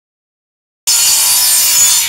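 A loud, steady rasping noise of a tool working material, like sawing or sanding, that starts suddenly just under a second in.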